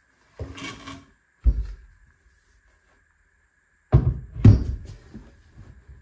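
Wooden newel post being handled and stood up against the bottom of a stair stringer: a brief scuffing rustle and a low thump, then, after a quiet gap, two loud wooden knocks about half a second apart as the notched post is set into place.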